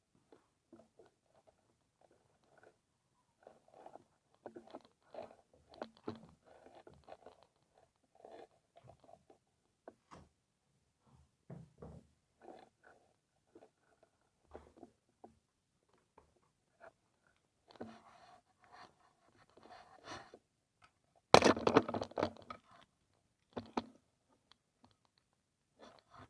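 Faint footsteps, clothing rustle and camera-handling noise of someone creeping quietly through a house, with a louder rustling scrape lasting about a second and a half near the end.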